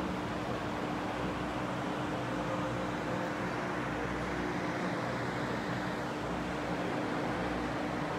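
Steady whir of electric pedestal fans, with a faint constant hum running underneath.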